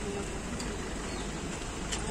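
Steady outdoor background noise with a low rumble, with faint voices of people standing nearby.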